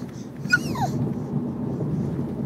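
A baby's short, high-pitched squeal about half a second in, its pitch rising briefly and then falling away.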